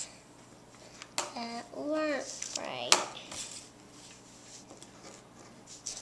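Faint scratching of a felt-tip marker on a paper pad as letters are written. A short voice comes in about a second in, and there is a sharp click near three seconds.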